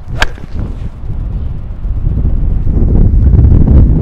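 A driving iron strikes a golf ball off the tee once, a single sharp crack just after the start. Wind then rumbles on the microphone, growing louder toward the end.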